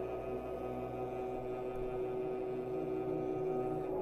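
String quartet, two violins, viola and cello, playing slow, soft, sustained held chords, the cello bowing long low notes.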